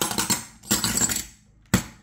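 Silver rounds clinking and sliding against each other as a stack is handled over a plastic coin tube, with one sharp click about three quarters of the way through.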